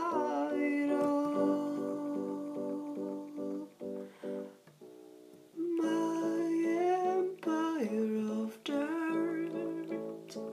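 Synth chords pulsing about three times a second under a long hummed vocal note. The music thins to a quiet gap about halfway through, then returns with the humming, which slides down in pitch near the end.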